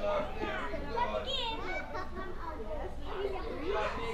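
Children's voices chattering and calling out over one another, high-pitched and indistinct, with no clear words.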